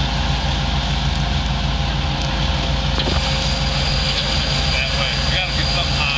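Off-road vehicle engine idling steadily, with a thin high whine coming in about halfway.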